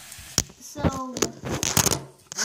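Handling noise from the recording device: a sharp click about half a second in, then crackling rubs on the microphone near the end as the camera is moved.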